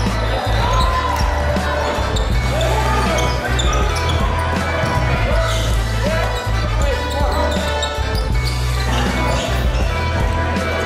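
Background music with a steady bass line, over basketball game sound: a ball bouncing on a hardwood court, with players' and spectators' voices.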